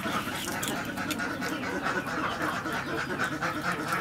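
Birds calling continuously in a busy chatter, with small sharp clicks of eggshell cracking as a hard-boiled egg is peeled by hand.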